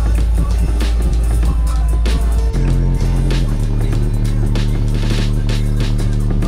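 Bass-heavy music played very loud through a car stereo's subwoofers, heard inside the car. Deep sustained bass notes dominate under a steady beat, and the bass line changes to a new note about two and a half seconds in.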